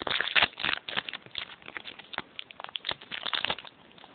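Foil booster-pack wrapper crinkling and crackling in the hands as the cards are taken out and the empty pack is handled. It is busiest in the first second and dies away shortly before the end.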